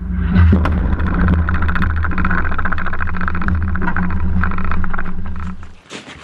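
Loud, steady low rumble with crackling, picked up by a camera on the deck of a ship at sea; it cuts off abruptly just before the end.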